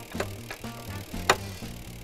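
Background music with a steady low bass line, over a few sharp clicks and fainter ticks from the jack that raises the drop's telescoping post being cranked up by hand.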